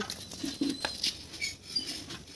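Ripe jackfruit being pulled apart by hand, its bulbs torn from the fibrous flesh and set down on a steel plate. The result is scattered small clicks and rustles.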